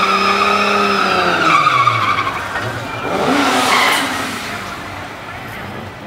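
Modified Toyota 86 doing a burnout: the engine is held at high, steady revs with tyres spinning, then the revs drop about two seconds in. A second burst of rising engine noise and tyre screech follows around three to four seconds in, then it settles to a lower, steadier running sound.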